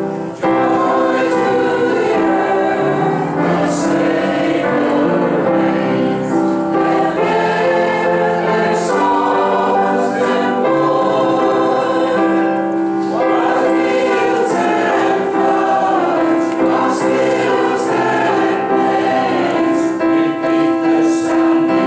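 Church congregation singing a hymn together.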